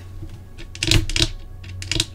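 A few sharp clicks and taps, most of them bunched together about a second in, from long fingernails handling tarot cards.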